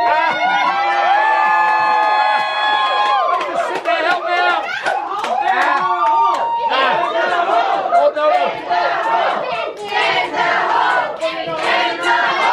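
A small group of people shouting and cheering together: several voices hold one long yell for about three seconds, then break into overlapping excited shouts.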